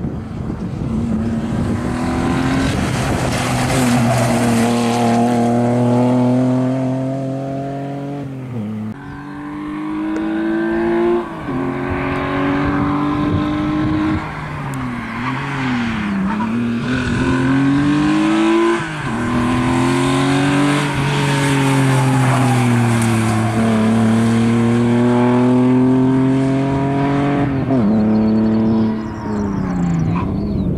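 BMW E36 engine revving hard through a slalom, its pitch repeatedly climbing under acceleration and dropping sharply about five times between pulls.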